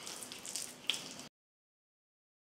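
Wooden spoon spreading and patting down a moist mashed-potato mixture in a baking dish: soft squishy scraping with one sharper tap a little under a second in. The sound then cuts out to dead silence.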